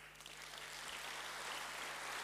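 Audience applause in a large hall, starting and growing steadily louder.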